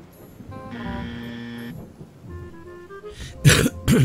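Dark ambient background music with sustained tones. Near the end a person coughs twice, loudly.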